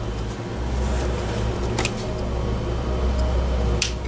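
Steady low mechanical hum, with a short click about two seconds in and another near the end.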